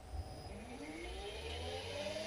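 TM4 electric traction motor and gearbox on a test bench spinning up under light throttle from a prototype torque controller: a whine that rises steadily in pitch from about half a second in, after a low knock near the start.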